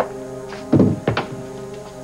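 Telephone handset being hung up on its desk phone: a thunk about three-quarters of a second in, then a sharp click, over soft sustained background music.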